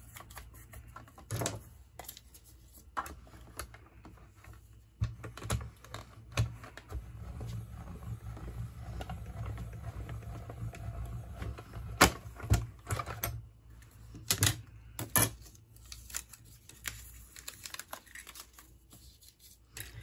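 Hand-cranked Mini Stampin' Cut & Emboss die-cutting machine rolling an acrylic plate-and-die sandwich through its rollers: a low rattling rumble with clicks through the middle stretch, die-cutting cardstock. Sharp clicks and taps of the acrylic plates being handled come before and after.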